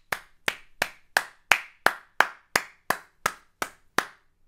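One person clapping their hands in a steady rhythm, about three claps a second, roughly a dozen claps in all.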